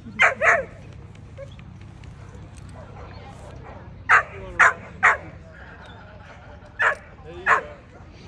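Young American Pit Bull Terrier giving seven short, high barks or yips in three clusters: two at the start, three in quick succession a few seconds in, and two near the end.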